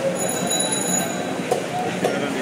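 Busy market background din: a steady mix of distant voices and activity, with a high ringing tone in the first second and a short knock about one and a half seconds in.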